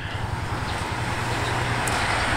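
Steady street ambience: an even low hum of motor traffic with a background hiss.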